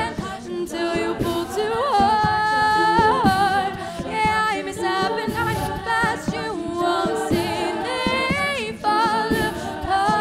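All-female a cappella group singing live: a lead voice with vibrato over sustained backing harmonies, with vocal percussion keeping a steady beat.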